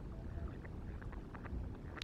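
Low wind rumble on the microphone, with distant birds calling in many short notes from about half a second in, coming more often toward the end.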